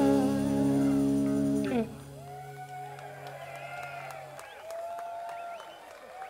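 A live rock band's final held chord of guitar, keyboards and bass cuts off about two seconds in, and a low note rings on a little longer. After it, scattered whoops and cheers come from the audience.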